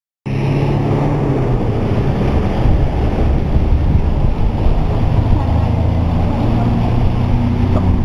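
Volvo B7R Low Entry city bus, its diesel engine running loudly with a low, steady rumble whose pitch drops and rises a few times.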